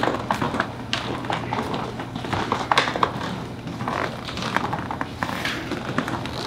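Footsteps of several people walking on a hard stage floor: irregular light taps and knocks, over a steady low hum.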